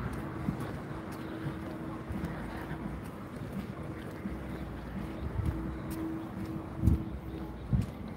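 Street ambience: a steady rumble of traffic with wind on the phone's microphone and a low steady hum, broken by two dull thumps near the end.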